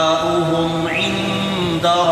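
A man chanting a Quranic verse in Arabic in melodic tajweed recitation, holding long drawn-out notes and stepping between pitches.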